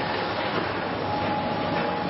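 Offset printing press running: a steady, dense mechanical clatter with a faint high whine over it.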